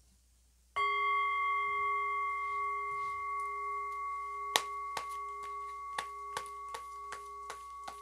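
A bell is struck once about a second in and rings on through the rest, several steady tones fading slowly. From about halfway, a string of light clicks and taps comes in as a tarot deck is handled and shuffled over it.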